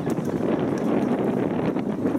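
Wind buffeting the microphone, a steady low rumble with a few faint clicks over it.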